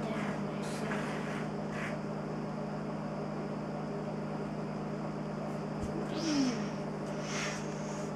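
A steady low hum, with a couple of short faint hisses near the end.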